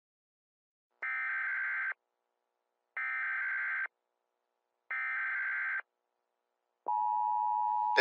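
Emergency Alert System test tones: three short buzzy, warbling bursts of digital header code, each about a second long and evenly spaced, then about a second before the end the steady two-tone attention signal begins.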